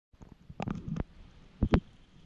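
Dull knocks and thumps on a GoPro action camera while skiing: a cluster about half a second in, then two louder knocks close together near the end, over a faint low rumble.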